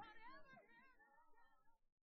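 The fade-out at the end of a gospel choir recording: faint singing with gliding pitch trails away and cuts to silence near the end.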